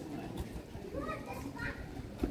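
Indistinct voices of people, children among them, talking and playing in the background.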